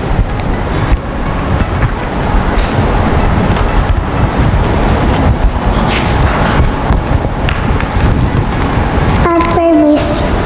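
Steady, loud rustling and rubbing noise on a clip-on microphone as a large paper booklet is handled and pressed close to it, with a short stretch of a child's speech near the end.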